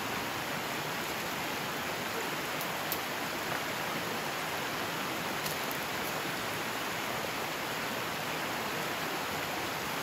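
Rocky stream running over stones, a steady rushing of water, with a couple of faint clicks partway through.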